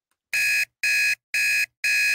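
Electronic alarm beeping: four short, identical high-pitched beeps, about two a second.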